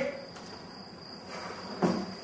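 Quiet hall ambience with a faint, steady high-pitched tone throughout and a single short knock near the end.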